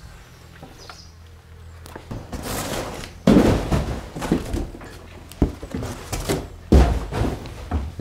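Clutter being shifted by hand in a bare brick-and-wood stable: rustling with a string of knocks and thuds, the heaviest thumps about three and seven seconds in.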